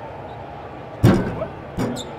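Basketball from a free throw hitting the rim about a second in, a sudden loud thud, followed by a smaller thud near the end as the ball comes off the rim.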